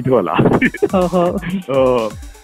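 A man talking in Burmese over a phone line, the voice cut off above the mid-highs, with background music running underneath.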